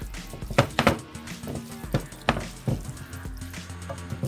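Kitchen tongs knocking against a skillet while tossing pasta in a creamy sauce: a few sharp, irregular knocks, two close together about half a second in and two more a little past two seconds, over background music.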